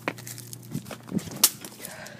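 A few scattered knocks and rustles, the loudest about one and a half seconds in, over a faint low hum.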